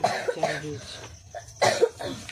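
A person coughing twice: a short rough cough at the start and another about a second and a half later.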